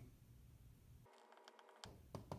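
Near silence: room tone with faint taps and squeaks of a dry-erase marker writing on a whiteboard.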